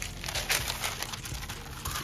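Parchment paper rustling and crinkling as a rolled sheet is pulled out and smoothed flat by hand, with the sharpest crackle about half a second in.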